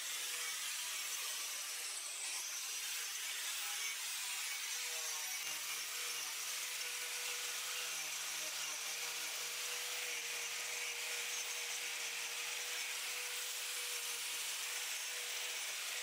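Hitachi angle grinder fitted with an Arbortech TurboPlane carving disc, running steadily as it shaves wood from a red gum block. The sound is a continuous, even cutting noise with a faint steady whine underneath.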